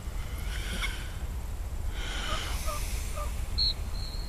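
A steady low wind rumble on the microphone, with faint distant calls and chirps. Near the end comes one short, sharp, high-pitched whistle blast, the loudest sound here, from a dog-training whistle.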